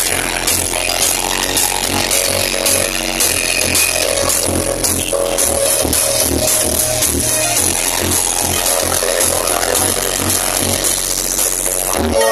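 Loud electronic dance music with a heavy, regular bass beat, played through the tall speaker stacks of a truck-mounted DJ sound system at close range.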